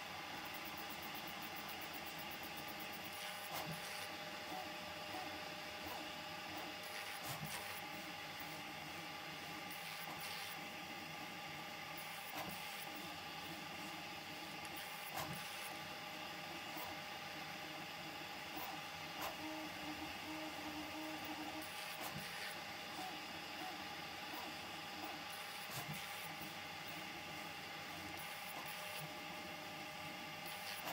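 Prusa MK4 3D printer fitted with a pellet extruder, running a print: a steady, faint whine of stepper motors with scattered clicks as the print head moves.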